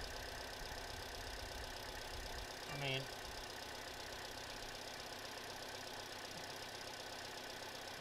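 Faint steady background hum with a low rumble during the first couple of seconds; a brief spoken 'I mean' about three seconds in.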